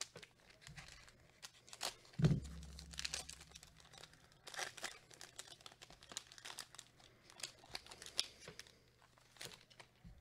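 Foil trading-card pack wrapper being torn open and crinkled by hand, with many small crackles as the cards are slid out and handled, and a soft thump about two seconds in.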